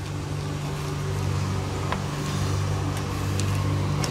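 A steady low mechanical hum, like a running motor or engine, with a couple of faint clicks about two seconds in and again near three and a half seconds.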